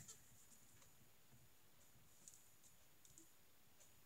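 Near silence: room tone with a few faint, small clicks.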